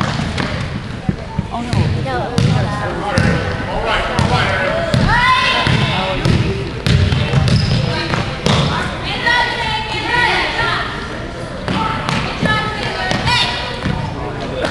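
A basketball bouncing on a hardwood gym floor during play, with repeated low thuds. Spectators and players call out and shout over it, with one loud rising shout about five seconds in.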